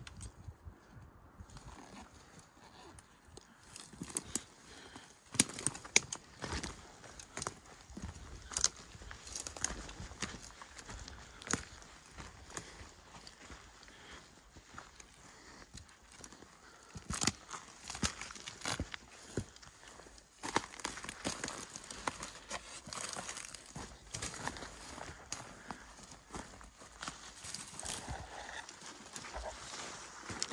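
Footsteps of hikers in boots walking through dry forest deadfall: an uneven run of steps on dry ground with twigs and sticks snapping underfoot, a few sharp cracks louder than the rest.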